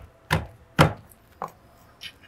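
Pestle pounding leaves in a small stone mortar: dull strikes about half a second apart, the last one lighter.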